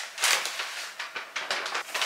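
Rustling and scuffing noises with a few light knocks.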